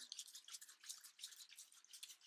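Near silence, with faint, irregular soft ticks and rustles from a gloved hand handling newspaper.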